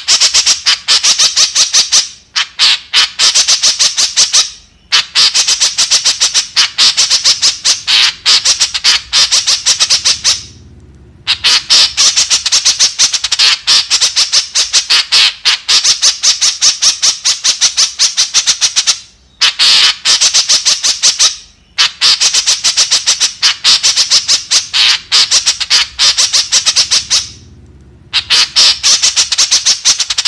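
White-breasted woodswallow (kekep) giving rapid, harsh, high chattering calls, several a second, in runs of a few seconds broken by short pauses.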